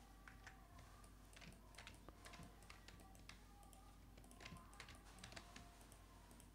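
Faint computer keyboard keystrokes and mouse clicks, scattered and irregular, against quiet room noise.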